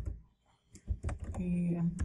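Computer keyboard keys being typed, a few separate keystrokes, with a voice drawing out a sound in the second half.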